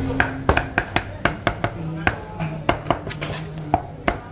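Cleaver chopping through raw chicken onto a thick round wooden chopping block: a rapid, uneven series of sharp knocks, about three to four a second.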